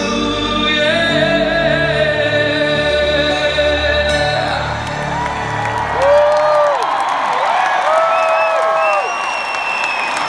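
Live arena concert sound: the closing held notes of an acoustic ballad, with singing and acoustic guitar, fade out about halfway through. The audience then cheers and whoops.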